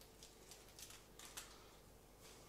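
Near silence, with a few faint soft ticks and rustles from ground coriander being sprinkled by hand and rubbed onto raw chicken.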